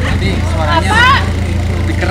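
Toyota Kijang Super's engine idling steadily, heard close to its aftermarket racing exhaust tip, a low even hum.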